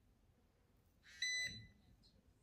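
A ZIIP Halo microcurrent facial device gives a single short, high-pitched electronic beep just past a second in, lasting about a third of a second.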